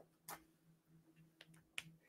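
Near silence with a faint steady hum and three faint, short clicks: one about a third of a second in, one a little before the end and one near the end.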